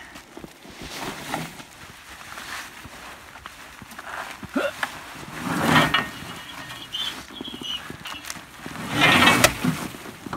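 A cut evergreen Christmas tree's branches rustling and scraping as it is shoved into a pickup truck bed, with a man's effortful grunts; the loudest bursts come about halfway through and again near the end.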